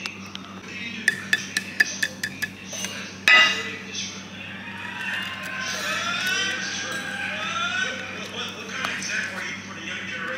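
Boiled egg shell tapped and cracked against a plate: a quick run of sharp clicks, then one louder knock about three seconds in, followed by the shell being picked off.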